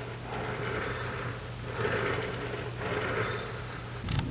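3D printed recirculating-ball carriage sliding back and forth along an aluminium OpenBeam extrusion, its 3/16-inch Delrin balls rolling in their track with a soft rattle. The rattle swells and fades about three times, once with each stroke.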